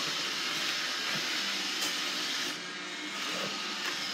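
Robot vacuum cleaner running across a wooden floor, a steady whirring hiss of its suction motor and brushes, dipping a little in level about two and a half seconds in.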